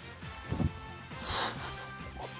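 Fort Brave online slot game's win music playing steadily as the win tally counts up. About halfway through, a short, breathy burst from the player.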